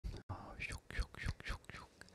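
A man whispering softly close to the microphone, in short broken bursts.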